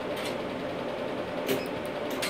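Q-switched tattoo-removal laser (RevLite) pulsing on eyeliner carbon dotted on skin: a few faint sharp snaps, the clearest about a second and a half in, over a steady machine hum. The snaps are the carbon pigment being shattered by very low-power pulses.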